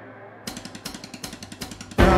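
Quiet break in a live band's song: a fading sustained tone, then, about half a second in, a fast, even run of sharp clicky percussion ticks, roughly eight a second.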